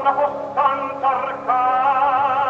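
Operatic tenor voice singing a few short notes, then a held note from about halfway through.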